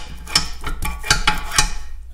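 Caterpillar D2 starting-engine control handle being worked by hand: a quick series of about eight metal clicks and clinks as the steel lever and its spring plungers latch and release. The freshly rebuilt handle is working as it is supposed to.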